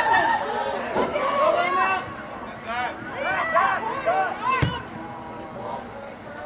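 Several voices shouting and calling out over one another during a youth soccer game, with one sharp thump about four and a half seconds in.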